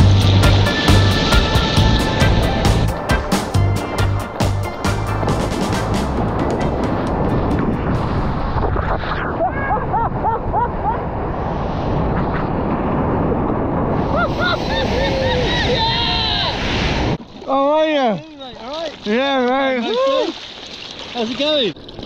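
Background music with a drum beat at first, giving way to the steady rush of breaking whitewater as a surfer rides the wave. Near the end the water quietens suddenly and voices whoop and laugh.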